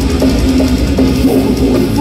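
Death metal band playing live through a large outdoor PA: heavy guitars over fast, dense drumming, loud and without a break.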